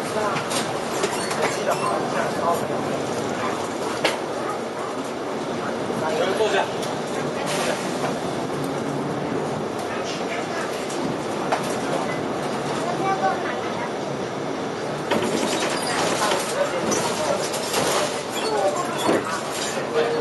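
Inside a King Long KLQ6116G city bus under way: steady engine and road noise with frequent rattles and knocks from the body and fittings.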